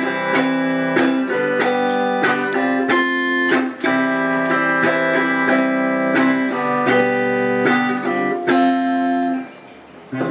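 Solo acoustic guitar played fingerstyle, a melody of plucked notes over held bass notes. The playing dips into a short pause near the end, then carries on.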